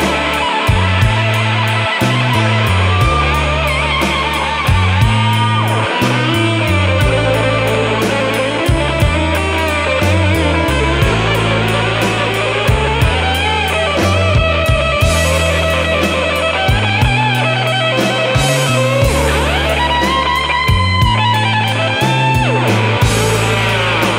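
Electric blues band playing an instrumental break with no vocals. An electric guitar plays lead lines with bent notes over a stepping bass line and a steady drum beat.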